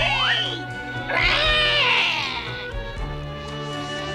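Cartoon cat yowling in pain, its paw caught in a snapped mousetrap: one cry trailing off in the first half second and a longer, wavering yowl from about one to nearly three seconds in, over orchestral background music.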